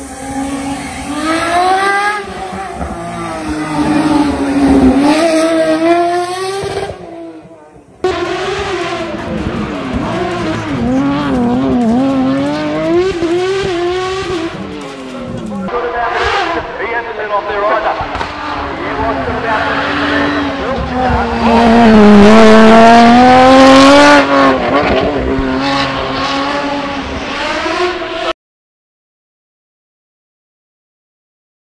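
Mid-mounted, naturally aspirated Formula Renault 3.5 V6 of the MC2 hillclimb car revving hard. Its pitch rises and falls again and again through gear changes as the car passes. The sound drops out briefly about a quarter of the way in and cuts off suddenly near the end.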